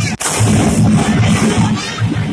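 Loud procession music with a heavy, steady beat, broken about a quarter of a second in by a sudden burst of firecrackers that keeps crackling over it.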